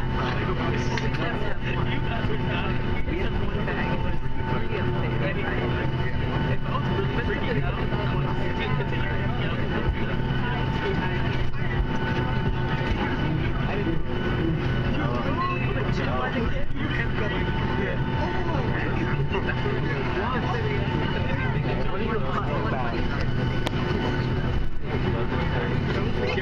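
Steady cabin drone of a Boeing 757 taxiing after landing, the engines at low power giving a constant hum with steady whining tones.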